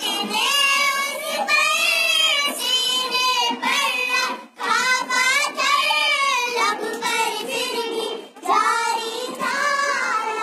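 A child singing a naat, an Islamic devotional song, in a high voice. The melody comes in phrases with short breaths about four and a half and eight and a half seconds in.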